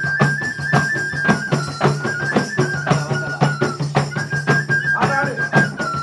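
A small flute plays a stepping folk melody (a Kodava folk tune) over hand-struck tambourines and frame drums keeping a quick, steady beat.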